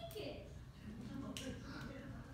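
Two sharp clicks a little over a second apart, one right at the start and one near the middle, over faint murmuring voices.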